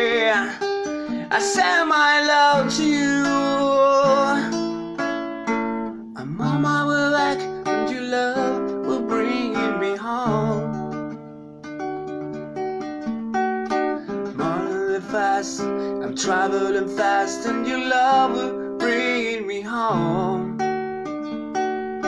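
Acoustic guitar strummed in a slow song, with a man singing over it; the playing eases off briefly about halfway through.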